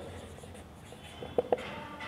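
Marker pen writing on a whiteboard, a faint scratching with two short sharp ticks about halfway through as the pen strikes the board.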